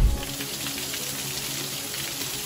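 Heavy rain falling steadily on wet pavement, an even hiss of downpour. A low boom sounds right at the start.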